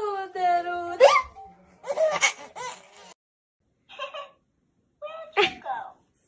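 Baby vocalising: a falling coo at the start, then a few short laughing bursts.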